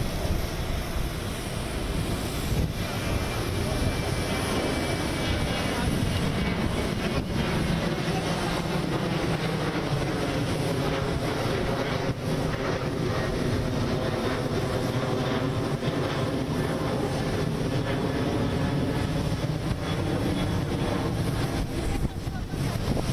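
Steady engine noise on an airport apron: the running whine and rumble of aircraft engines mixed with a vehicle engine idling. From about eight seconds in, a low hum with a steady pitch comes through more clearly.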